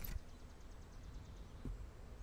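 Faint outdoor ambience with a low rumble, a brief sharp click right at the start and a soft knock about 1.7 s in.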